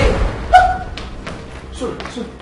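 A single loud thud about half a second in, with a brief ringing tone after it; faint voice sounds come in near the end.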